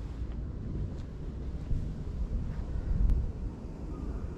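Wind buffeting the microphone: a low, unsteady rumble, with a faint click near the end.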